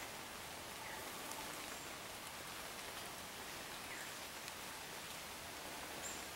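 Faint, steady hiss of woodland ambience, with a few soft ticks.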